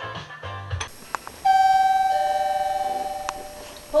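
Music with a heavy beat cuts off about a second in; then a two-tone doorbell chime rings, a higher note followed by a lower one, both fading out over about two seconds.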